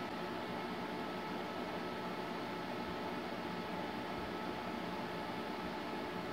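A computer's cooling fans running steadily: an even hiss with a faint constant whine, while Norton Ghost loads.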